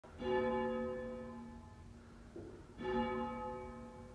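Church bell tolling: two strokes of the same pitch, about two and a half seconds apart, each ringing on and fading away.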